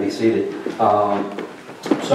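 A man talking into a pulpit microphone, with one sharp knock near the end.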